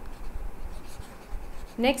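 A pen scratching on the writing surface as a word is written out by hand. A woman's voice comes in near the end.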